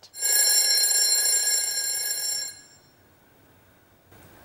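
A ringing sound made of several steady high tones, held evenly for about two and a half seconds and then cut off abruptly.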